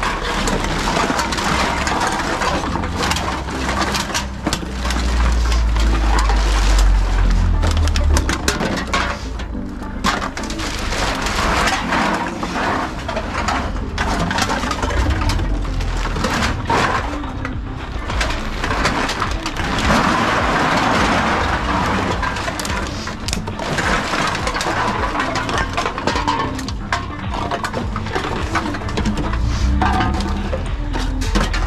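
Reverse vending machine taking in plastic bottles and cans one after another, with irregular clattering and crushing knocks as containers go through the chute, over a low machine rumble that is strongest a few seconds in.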